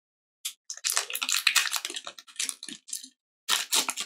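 Foil wrapper of a Pokémon card booster pack crinkling and tearing in someone's hands, in crackly bursts from about half a second in to about three seconds, then again near the end.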